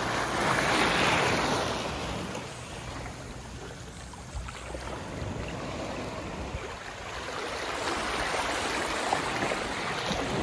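Small sea waves washing up onto a sandy beach and rocks, swelling about a second in and again near the end.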